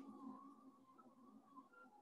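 Near silence, with the faint, wavering whine of a Silhouette Alta delta 3D printer's stepper motors as it lays down layers of a print.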